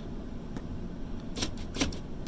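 Power door locks of a 1995 Ford F-150 working as the door-lock switch is pressed: a sharp click about half a second in, then a few more clicks close together near the end.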